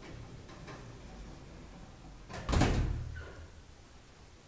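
Elevator door of a KONE traction elevator moving, ending in a loud thud with a short ringing decay about two and a half seconds in.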